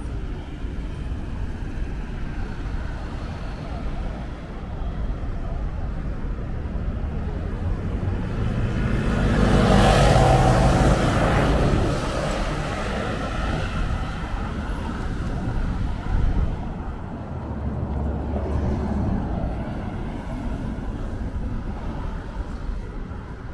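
Road traffic running steadily along a multi-lane city street, with one vehicle passing close by, swelling to its loudest about halfway through and then fading.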